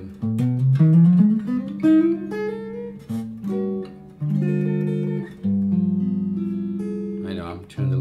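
Archtop guitar playing a jazz chord progression, quartal 'four chord' voicings moving to dominant 13 flat 9 chords, each chord left to ring. A sliding run rises up the neck about a second in. The guitar is tuned a little low.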